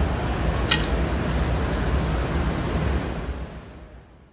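Steady background noise of a large exhibition hall with a low hum, a single sharp click about a second in, fading out near the end.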